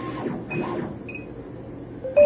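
A Monport CO2 laser engraver jogging its laser head along the gantry. A steady motor whine from the moving head stops shortly after the start, and two short high beeps from the machine's control-panel keys follow about half a second and a second in.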